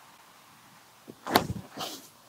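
A backhand disc golf drive: a small click about a second in, then a sharp swish at the release, followed by a shorter hiss.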